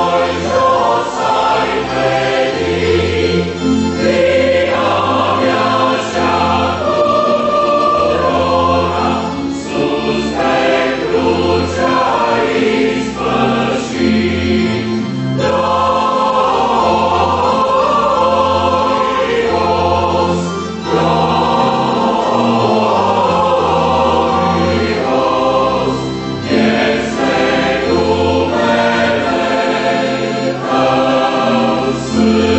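Mixed choir of women's and men's voices singing a church hymn in parts, in long held phrases with short breaks between them.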